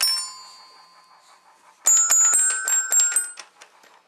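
Toy xylophone bars struck: one ringing note at the start, then a quick, uneven run of about eight strikes about two seconds in, each note ringing on briefly.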